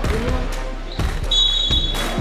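Referee's whistle: one short, steady, high blast a little past halfway through, over a basketball bouncing on the court and background music.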